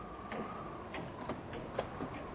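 Footsteps: a series of short, sharp steps at an uneven pace of about two a second, one louder step near the end.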